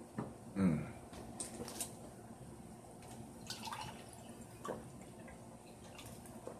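A few small clicks and knocks of objects being handled, with a short falling hum from a man's voice about half a second in.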